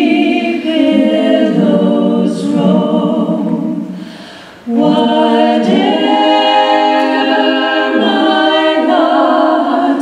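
A trio of women singing in harmony into handheld microphones, unaccompanied, on long held notes. The singing breaks off briefly about halfway through, then comes back in.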